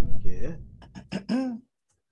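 A person's brief vocal sounds, like throat clearing, in a few short bursts just after the quiz countdown music cuts off.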